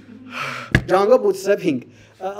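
A man's voice: a sharp intake of breath, a brief click, then a short stretch of speech.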